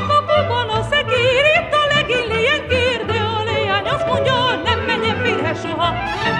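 Transylvanian Hungarian folk music from Szék: a voice sings a heavily ornamented melody whose pitch wavers quickly, over a string-band accompaniment with a pulsing bass.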